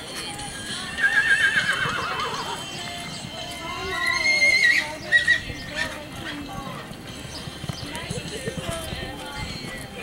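A horse whinnies about a second in: one loud, wavering call that falls in pitch. A few seconds later people shout, and the hoofbeats of a horse galloping on arena dirt thud on through the rest.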